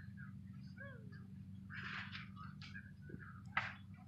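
Faint bird calls over a steady low hum, with a brief rustle about two seconds in and a single sharp click near the end.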